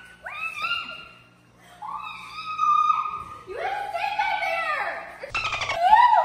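A woman shrieking and screaming in fright, several high-pitched rising-and-falling cries broken by a short lull about a second in. A brief clatter comes near the end.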